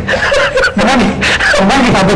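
Men chuckling and laughing, broken up with bits of speech.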